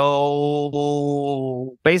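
A man's voice holding one long, level hesitation vowel, a drawn-out "so…" lasting under two seconds. Ordinary speech resumes near the end.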